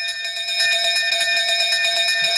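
A brass bell on a post rung continuously, one steady bright ring with a fast flutter that runs on without a break, rung to call the rowing boat across the river.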